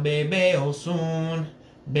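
A man singing a Lucumí chant unaccompanied, in long held notes. He stops briefly for breath about a second and a half in, then comes back in.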